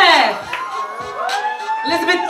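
A voice calling out in long drawn-out tones over background music: a falling whoop at the start, then a long held call in the second half.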